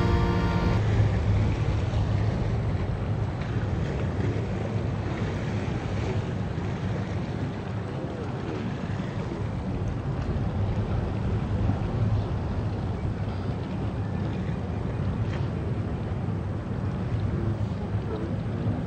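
Steady low drone of a river cruise boat's engine under a rushing noise of wind and water on the microphone. A piano piece ends in the first second.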